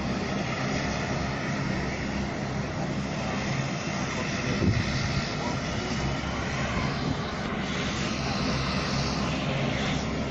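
Aircraft engines running steadily on the ground, heard from the apron as a continuous, even noise with a faint steady hum, with a brief thump about halfway through.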